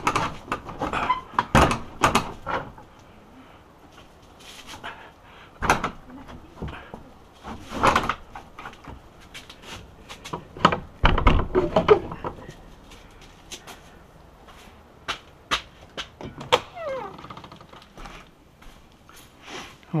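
Wooden workshop doors being bolted by hand: a run of scattered clicks and knocks from the metal door bolts and the wood, with a heavier thump about eleven seconds in and a short falling squeak a few seconds later.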